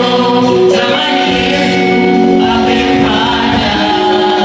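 Mixed group of women and men singing a Swahili gospel song in close harmony through microphones and a PA, holding long chords that shift a few times.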